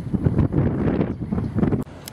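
Wind buffeting the microphone in loud, uneven gusts, cutting off abruptly near the end.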